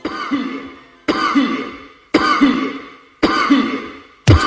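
Intro soundtrack: four alike sharp hits about a second apart, each dying away over most of a second, like a countdown sound effect.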